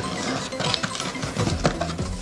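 A cardboard box being opened by hand: its tuck flap pulled out of the slot and the lid lifted, giving a run of small cardboard scrapes and taps.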